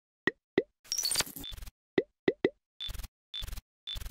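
Logo-intro sound effects: a string of short, sharp plops and pops, about five in all, mixed with quick high chirps and four short hissy bursts that each carry a thin high tone.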